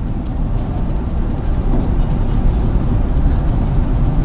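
A steady low rumble with a faint hiss, like engine or traffic noise, and no clear events in it.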